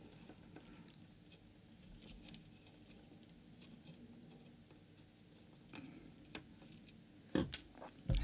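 Faint, scattered small clicks and taps of a soldering iron tip and tweezers against a circuit board as a surface-mount diode is desoldered with a solder bridge across its pads. A louder knock and click come near the end.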